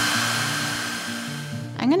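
Handheld hair dryer running: a rush of air with a steady motor whine, dying away shortly before the end.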